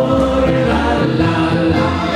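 Live band music: a Steirische harmonika (diatonic button accordion) and an upright double bass playing, with male voices singing together.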